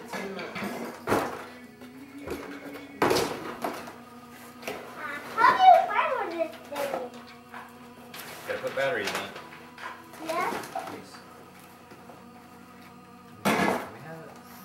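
Indistinct voices of an adult and a small child, with music in the background. A few sharp knocks and rustles of a toy and its packaging being handled, about a second in, about three seconds in, and near the end.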